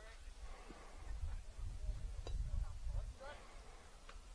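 Quiet ballfield ambience: faint distant voices over a low rumble, with a single sharp click a little past halfway.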